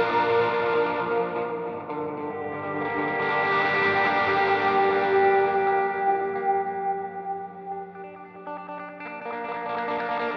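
Epiphone Casino hollow-body electric guitar playing barre chords through effects, the notes ringing on with long sustain. The sound thins and drops in level about eight seconds in, then fills out again near the end.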